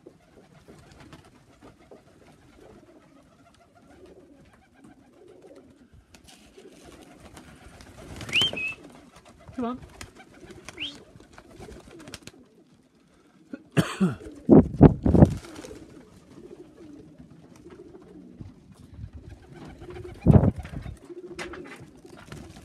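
Tippler pigeons cooing softly, with loud bouts of wing flapping a little past the middle and again near the end as birds land and jostle on the loft boards. A short rising whistle sounds about eight seconds in.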